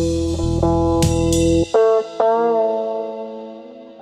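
Instrumental gap in a song: a held guitar chord over bass, then the bass drops out about a second and a half in. Two plucked guitar notes follow and ring out, fading away.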